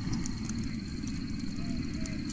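Night ambience: a steady, pulsing high-pitched insect trill, cricket-like, over a low steady rumble with a few faint clicks.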